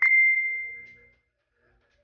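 Smartphone notification tone for an incoming message: a single high ding that fades out over about a second.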